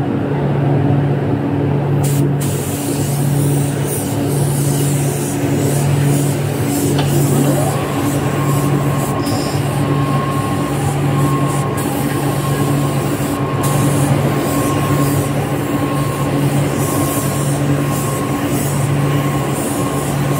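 Compressed-air gravity-feed spray gun hissing as it sprays colour onto jeans, starting about two seconds in with a few brief breaks as the trigger is let go. Underneath runs a steady factory machine hum that pulses about once a second.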